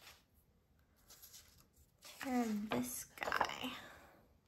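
A woman's brief murmured voice, falling in pitch, about two seconds in, followed by paper rustling as a large sheet of scrapbook paper is handled.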